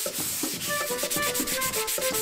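Sandpaper rubbed by hand over stained wood in quick back-and-forth strokes, a light sanding of the stained surface. Background music plays underneath.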